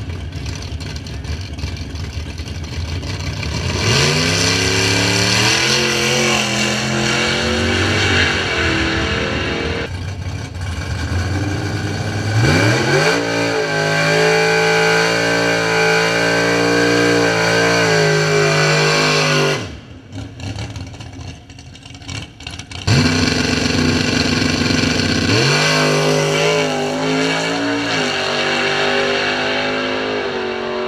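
Drag cars' engines revving in stages. A burnout is held at high revs for about seven seconds before the engine drops back. After a short lull the engines come back suddenly and climb to full throttle again near the end as the cars leave the line.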